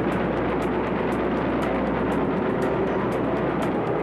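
Steady drone of aircraft engines in flight, with background music and light regular ticks about three times a second.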